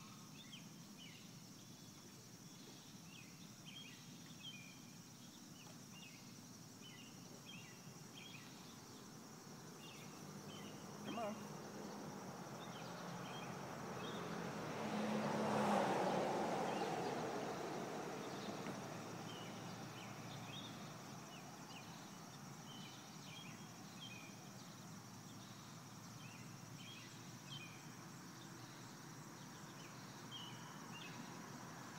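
Faint pasture ambience with scattered short high chirps. From about ten seconds in, a broad rush of noise slowly swells, peaks about halfway through and fades away over a few seconds.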